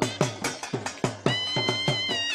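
Folk dance music: a drum beating about four to five strokes a second under a high, nasal reed pipe. About a second and a half in, the pipe settles into a long held note and the drum strokes grow lighter.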